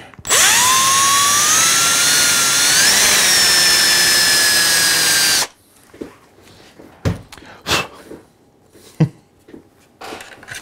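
Cordless drill spinning up and boring into a 3D-printed PLA part to make a hole for threaded rod. Its motor whine rises quickly at the start, climbs briefly about three seconds in, and cuts off suddenly after about five seconds. A few light knocks follow.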